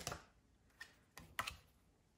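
Tarot cards being handled and laid down on a cloth-covered table: a few light taps and slides of card stock, the loudest right at the start.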